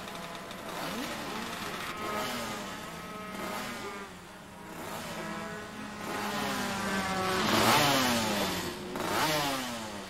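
Several racing motorcycle engines revving and passing by, their pitches overlapping and gliding up and down. The loudest pass rises and then drops in pitch about eight seconds in.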